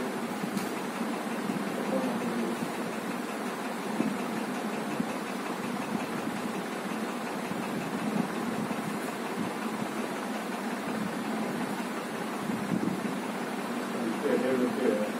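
A steady mechanical whirring drone, like a small motor running, holding even throughout with no strong single events.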